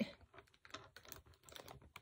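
Faint, irregular light clicks and taps of fingers pressing small controls, a few each second, made while adjusting the lighting.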